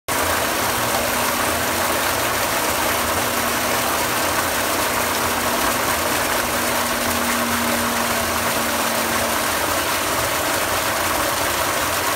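A refurbished Keraflo 2-inch high-flow delayed-action float valve with new internals, open and discharging at full flow into a water storage tank: a steady rush of water pouring from the outlets and churning the tank surface. A faint steady hum underneath stops about nine seconds in.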